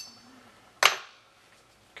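One sharp metallic click with a short ring about a second in, from an AR-15 bolt carrier group as the bolt is worked in and out of the carrier body.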